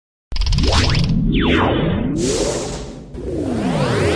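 Film logo sting: synthesized whooshes and many sweeping pitch glides, rising and falling, over a low rumbling music bed. It starts a moment after the opening silence and dips briefly near the end before the sweeps resume.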